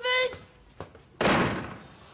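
A door slammed hard about a second in: one sudden loud bang that dies away within half a second, with a faint click just before it.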